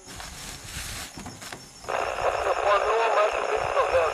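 Indistinct, muffled voices with a narrow, radio-like sound, starting about two seconds in after a short stretch of noise with a few knocks.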